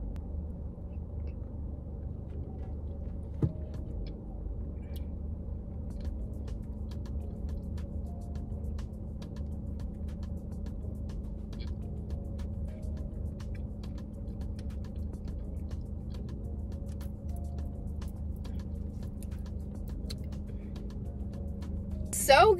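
Steady low rumble of a car running at idle, heard inside the cabin, with soft background music over it. From about six seconds in there is a run of faint light clicks.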